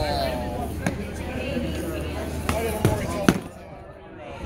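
Padded foam swords striking round shields and fighters in sword-and-shield sparring: four sharp knocks spread out, the loudest near the end.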